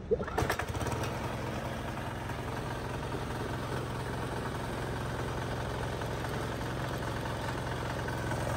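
Kawasaki KD173 7 hp single-cylinder diesel engine on a walk-behind tiller, recoil pull-started with the decompression lever used: it catches within the first half second and settles into a steady idle.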